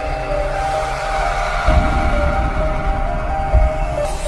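Logo-intro music: held steady synth tones with a swelling whoosh, punctuated by deep booms about every two seconds.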